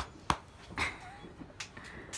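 A sharp click, then a louder one about a third of a second later, followed by a couple of fainter ticks.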